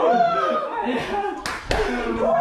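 Several men shouting and cheering excitedly over one another, with two sharp hand claps in quick succession about one and a half seconds in.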